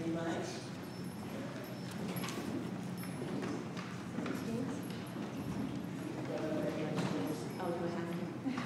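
Indistinct voices and low chatter from people in a church, with scattered taps and knocks.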